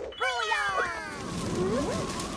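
A wordless cartoon character vocal: one long voiced cry that slides down in pitch, then a short upward glide near the end.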